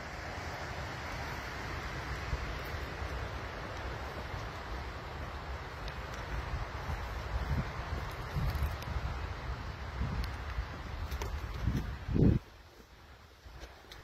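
Wind buffeting the phone's microphone: a steady rushing hiss with low rumbling gusts, cutting off abruptly about twelve seconds in.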